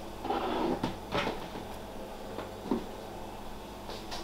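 A sharp knock about a second in and a fainter one near three seconds, like a cupboard or drawer being shut, over low room hum.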